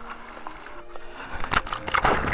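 Background music, joined about one and a half seconds in by loud, close water splashing in a swimming pool.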